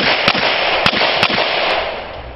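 Handgun shots in a pistol competition stage: four sharp reports, unevenly spaced about half a second apart, over a rushing noise that fades near the end.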